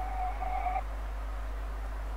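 A steady low hum, with a faint thin held tone in the first second that then stops.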